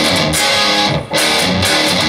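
Electric guitar playing a power-chord riff with palm-muted open-E notes, in two phrases with a short break about a second in.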